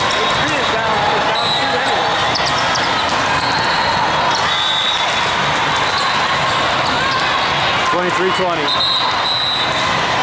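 The steady din of a busy volleyball hall: many overlapping voices from players and spectators, with scattered sharp ball hits and bounces and short squeaks of sneakers on the sport-court floor.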